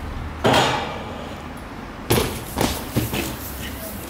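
A BMX bike and rider crashing on concrete stairs: one sharp impact about half a second in, then a louder cluster of impacts and clatter from about two seconds in as the bike clips the last step and rider and bike hit the pavement.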